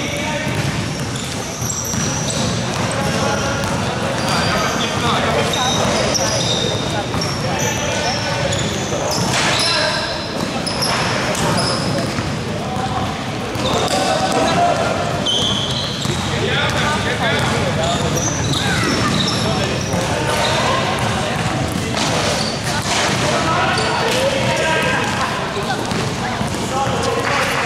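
Basketball game sounds: a ball bouncing on the court as it is dribbled, short high sneaker squeaks, and players' voices calling out.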